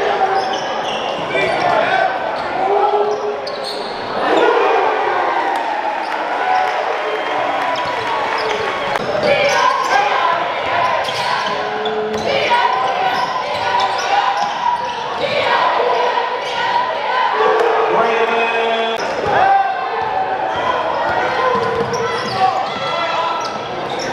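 Live sound of a basketball game in a gymnasium: the ball bouncing on the hardwood court amid an indistinct hubbub of crowd and player voices, echoing in the large hall.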